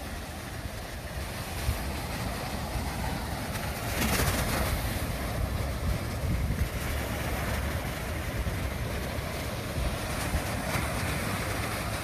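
Small waves washing in on a sandy beach: a steady wash of surf with a louder surge about four seconds in, over a low rumble.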